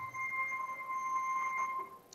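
One steady, pure high note from soft background music, held for almost two seconds with a fainter overtone, stopping just before the speaking resumes.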